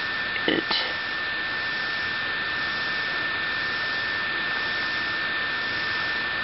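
Steady hiss with a constant high-pitched whine, and a brief faint sound about half a second in.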